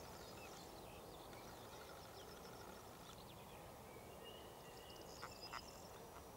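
Near silence: faint outdoor ambience with faint, high, short bird chirps scattered through it, and two soft clicks about five seconds in.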